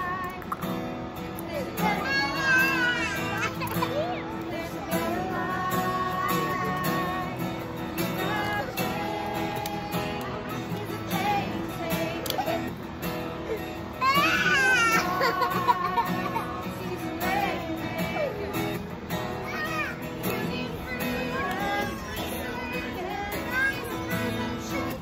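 Acoustic guitar strummed in steady chords with voices singing a worship song. About 14 seconds in, a young child's high-pitched cry rises loudly over the music.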